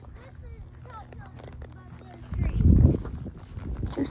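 Short high chirps, most likely small birds calling, come through the first half. About two and a half seconds in, a loud low rumbling noise lasts for about half a second.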